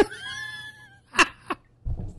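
Men laughing hard: a high-pitched, wheezing squeal of a laugh followed by two short gasping breaths.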